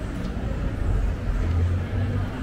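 Low engine rumble of a motor vehicle in a street, swelling about one and a half seconds in, over general street noise.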